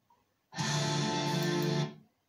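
A short burst of guitar music, about a second and a half long, that starts and stops abruptly.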